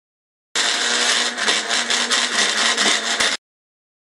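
Small electric blender running for about three seconds, blending a fruit smoothie; loud enough that a child covers her ears. It starts and cuts off abruptly.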